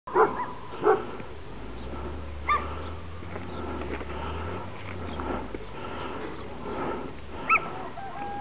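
Dog barking: four short barks, two close together at the start, one about two and a half seconds in and one near the end, with a low rumble under the middle of the stretch.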